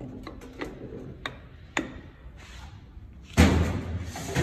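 Steel gear shafts and parts of a dual-clutch gearbox clinking sharply a few times as they are handled. About three and a half seconds in comes one louder, longer clunk of heavy metal.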